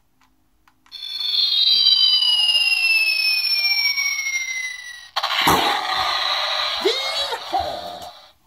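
Handheld electronic sound-effects box playing through its tinny little speaker. It sounds a long falling whistle for about four seconds, then a sudden burst of explosion-like noise that lasts nearly three seconds.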